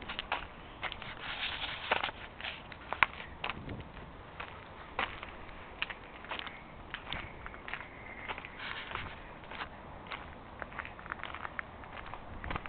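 Footsteps on asphalt pavement with irregular light clicks and crackles.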